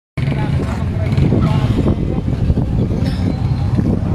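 Many motorcycle engines running together in a dense crowd of riders, with voices mixed in.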